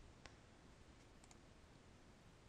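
Near silence: room tone, with two faint computer mouse clicks, one just after the start and one about halfway through.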